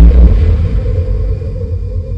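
Deep rumbling tail of a logo sound effect's boom, loud at first and slowly fading, with a faint steady hum above it.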